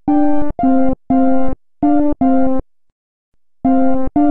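Chiptune music from a web-based SID-style synthesizer imitating the Commodore 64 sound chip: a melody of short, separate buzzy notes, five in a row, then a pause of about a second before the notes resume near the end.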